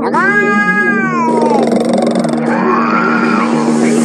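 An animated cat voiced by a person making drawn-out cat-like vocal sounds: a long meow-like yowl that falls away after about a second and a half, then a softer rising-and-falling call, over a steady low drone.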